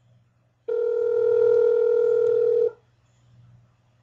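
Telephone ringback tone on the caller's line: one ring of a steady dual tone lasting about two seconds, heard while the outgoing call rings through before it is answered. A faint low line hum runs underneath.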